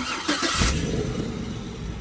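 A car engine starting: a short burst of noise, then the engine settles into a steady low idle.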